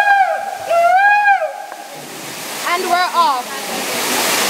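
Waterfall water rushing steadily inside a rock grotto. Over it, a high voice gives repeated rising-and-falling calls during the first half and a few brief voices come in about three seconds in.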